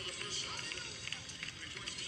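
Indistinct voices over faint background music, with scattered small clicks.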